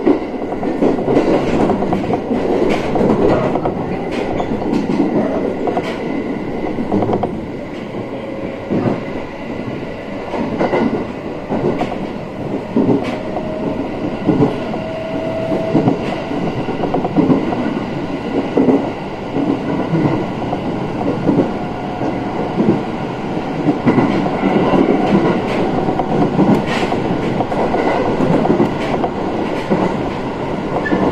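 JR East 701 series electric train running at speed, heard from inside the car: a continuous rumble of wheels on rails, with scattered clicks over the rail joints.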